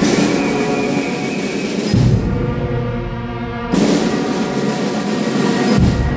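Wind band of clarinets, saxophones, trumpets and sousaphone playing a slow funeral march in sustained chords. A deep drum stroke lands about every two seconds.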